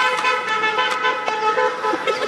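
A car horn held in one long steady blast, its tone unchanging, cutting off near the end, with a few sharp clicks over it.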